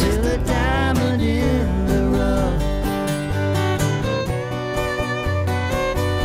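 Acoustic string band of acoustic guitars, upright bass and fiddle playing a country-bluegrass song. A sung word is held with a wavering pitch for the first second or two, then the band plays on without singing, the fiddle coming forward toward the end.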